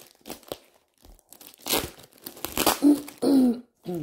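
A package being torn open by hand, its wrapping crinkling, with sharp rips about two and three seconds in.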